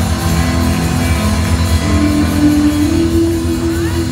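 Live gospel band playing: guitar and drum kit over a heavy bass, with long held notes.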